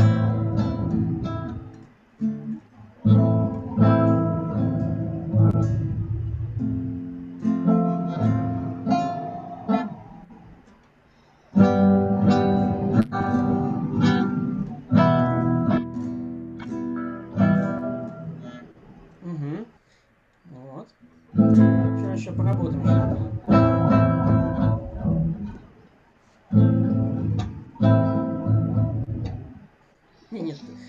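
Acoustic guitar strummed slowly through a chain of open chords, a few strums on each, with short silent breaks at the chord changes: the player is not yet keeping an unbroken rhythm. Heard through a video call.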